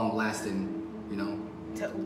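Quiet, indistinct speech over a steady held low tone.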